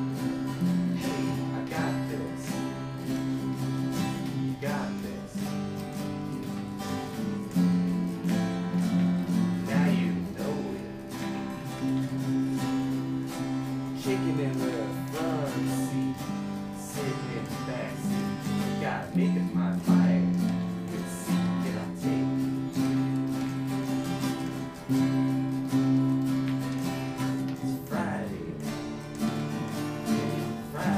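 Two acoustic guitars strummed along with an electric bass in an instrumental folk-rock passage. Held chords change every couple of seconds over a steady strumming rhythm.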